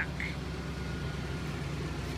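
1996 Ford Explorer's V8 engine idling at the curb, a steady low rumble.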